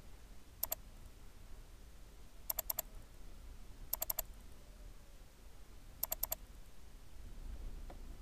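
Computer mouse button clicking in four quick bursts of two to four clicks each, spaced about one and a half to two seconds apart, over a faint low room hum.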